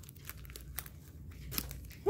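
Paper and card packets rustling and flicking as a hand rummages through a stuffed desk organizer: a string of quick, light rustles over a faint low hum.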